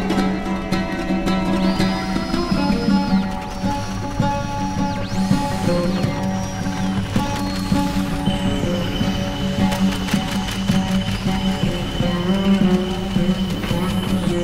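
Experimental music: an oud plucked in quick, dense repeated notes over a steady low note, with short-wave radio whistles above it that glide in pitch and settle into a held high tone in the second half.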